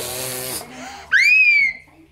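A small child's breathy vocal noise, then about a second in a loud, very high-pitched squeal that rises and then holds briefly.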